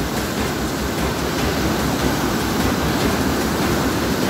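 A mudflow torrent of muddy floodwater rushing past in a steady, churning wash of noise.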